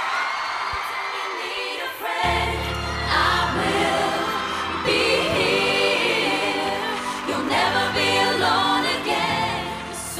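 Female pop vocal group singing in harmony over a backing track, with a deep bass coming in about two seconds in.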